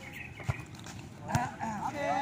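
Two sharp slaps of hands striking a volleyball, about half a second in and again just under a second later, followed by players shouting near the end.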